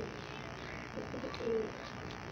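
Domestic pigeons cooing faintly in the loft, a few short low calls about a second in.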